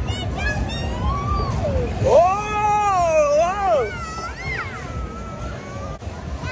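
Dodgem cars running on a fairground track: a steady low rumble under voices and fairground music, with a loud high voice held for about two seconds near the middle.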